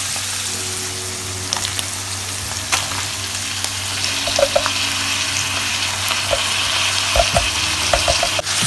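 Minced meat frying in a pan with a steady sizzle. Diced tomatoes are tipped in from a wooden board, with a few light knocks of the board and wooden spoon, and the sizzle grows a little louder from about halfway.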